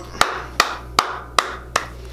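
One person clapping slowly, five single claps at about two and a half a second.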